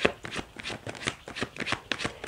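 A deck of tarot cards being shuffled by hand: a steady run of quick card slaps and riffles, several a second.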